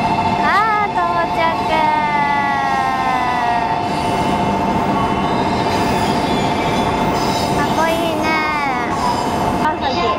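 A steady, warbling two-tone electronic signal sounding on a Shinkansen platform, with high voice-like calls gliding up once near the start and falling in pitch around two and eight seconds in.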